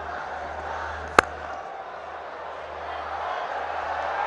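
A cricket bat strikes the ball in a single sharp crack about a second in, over a steady murmur of the stadium crowd.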